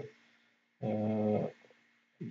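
A man's drawn-out hesitation sound, one low held "aah" at a steady pitch lasting under a second, about a second in.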